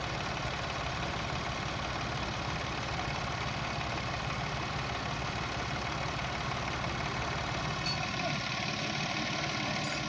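Ford 4600 tractor's engine running steadily at low revs, with a faint click or two near the end.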